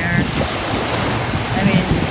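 Sea waves washing and churning, with wind buffeting the microphone in a low rumble.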